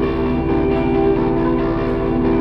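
Slow instrumental music: a saxophone playing over a steady held chord.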